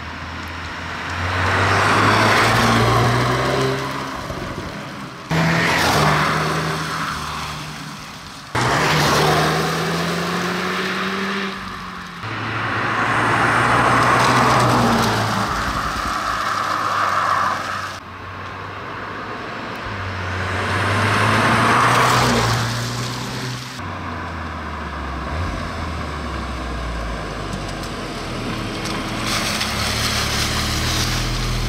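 The 2021 Audi S3 Sportback's 2.0-litre turbocharged four-cylinder petrol engine in a string of drive-bys, the engine note rising and falling as the car drives past again and again. The passes are cut together, so the sound jumps suddenly between them, and it settles to a steadier run near the end.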